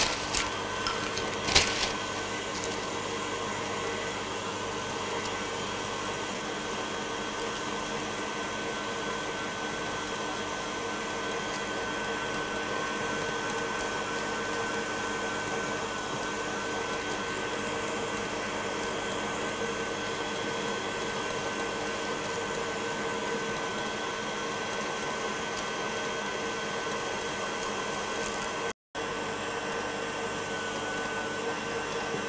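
KitchenAid stand mixer running steadily, whisking a batch of Italian meringue while it cools; an even motor whine with a few steady tones. A few light clicks in the first two seconds.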